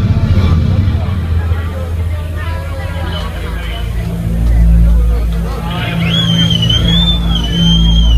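A rock band's electric guitars and bass ringing out at the end of a song over crowd chatter, then a long held low bass note and a long, wavering high whistle near the end.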